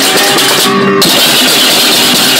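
Balinese baleganjur processional gamelan played on the march: dense, continuous clashing of hand cymbals over drums and steady gong tones, the cymbal clatter thickening about a second in.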